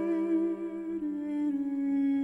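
Wordless male voice humming a cello line in duet with a bowed cello, in a fast Baroque sonata movement for two cellos. Two held notes sound in harmony, and the upper one steps down in pitch about a second in.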